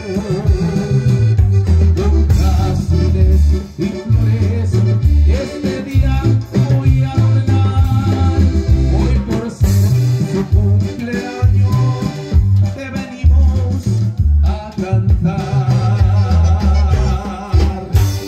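Live Latin American band music: a singer over guitar and a strong repeating bass line.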